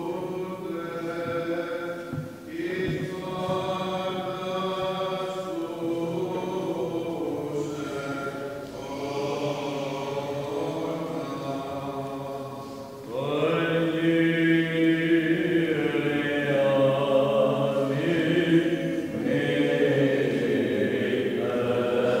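Byzantine chant of a Greek Orthodox service: unaccompanied voices singing long, held, ornamented notes. It gets louder about thirteen seconds in.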